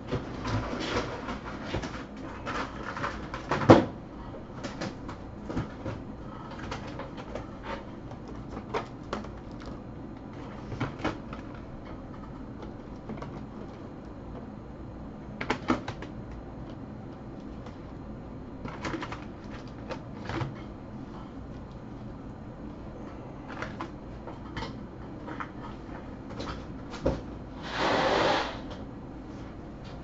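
Trading card boxes and packaging being handled at a table: scattered taps, knocks and light rustling, with a sharp knock about four seconds in and a louder rustle lasting about a second near the end.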